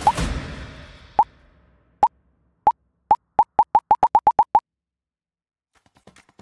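A run of about fourteen short pop-up sound effects, each a quick upward blip. They come slowly at first, then speed up into a rapid string before stopping abruptly. This is the kind of pop edited over on-screen graphics appearing one after another.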